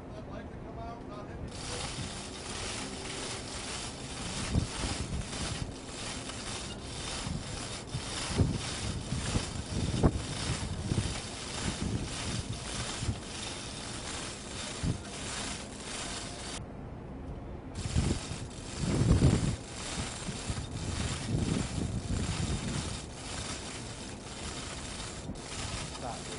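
Hoist chain and the metal launcher hardware clicking and rattling as a Rolling Airframe Missile is lowered into its launcher, with wind on the microphone. There are a few heavier low thumps, the loudest about 19 seconds in.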